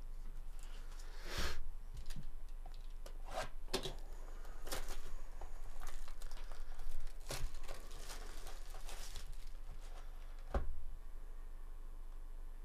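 Plastic shrink wrap being torn and crumpled off a sealed trading-card hobby box by gloved hands: irregular crackling and rustling with a few sharper snaps, the loudest about a second and a half in and near the end.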